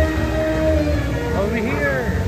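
Show soundtrack over the arena loudspeakers: a held, horn-like tone with a low rumble under it, then swooping pitch glides near the end, like a comic sound effect.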